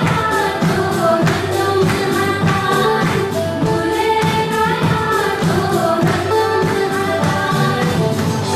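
Nyishi-language gospel song with singing over a steady beat.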